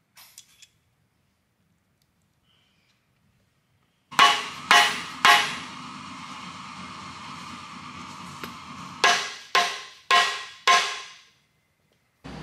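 Crankshaft in an aluminum LS3 block struck with sharp blows: three quick strikes, a pause, then four more about half a second apart, each leaving a short metallic ring. The crank is being tapped fore and aft to line up the thrust bearing while setting thrust clearance.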